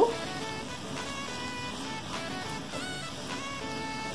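Soft background music with steady held notes.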